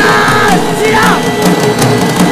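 Dramatic film background score: a steady low pulse about twice a second under swooping high notes, with a crowd-like mass of voices mixed in.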